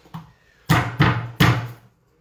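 Three heavy knife strikes on a bamboo cutting board, about a third of a second apart, each a sharp thud that dies away quickly.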